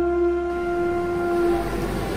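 Instrumental music: a single long woodwind note that slides up into pitch and fades out about three-quarters of the way through, over the hiss of small waves washing onto a pebble shore.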